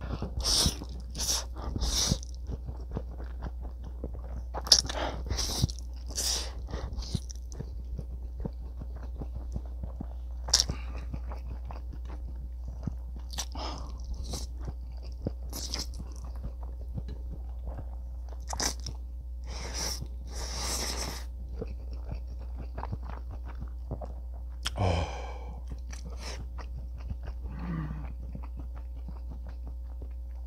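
A person eating spicy stir-fried instant noodles with chopsticks: loud slurps of noodles in short clusters, with chewing in between.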